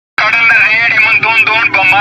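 Public announcement blaring through a horn loudspeaker mounted on a municipal garbage vehicle: a loud, tinny, narrow-sounding voice over a low rumble.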